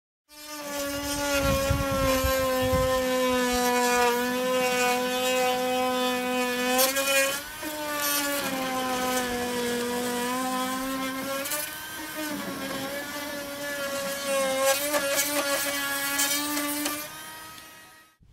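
Handheld rotary tool cutting a hole through the wall of a clear plastic storage box: a steady motor whine whose pitch sags as the bit bites into the plastic and picks up again as it eases. The whine dips briefly twice, about halfway through and about two-thirds through, and dies away near the end.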